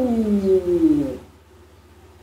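A man's long, drawn-out wordless 'oooh' that slides steadily down in pitch and ends a little over a second in.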